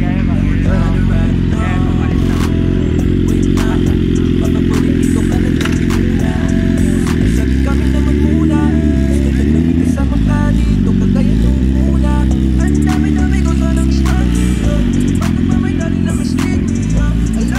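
Loud music with a heavy bass line, mixed with motorcycle engines running and background voices, with scattered sharp clicks.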